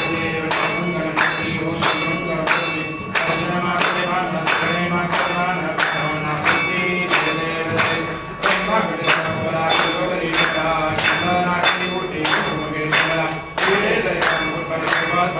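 A group singing a Ganesh aarti while clapping in time, with sharp claps about twice a second over the sung melody.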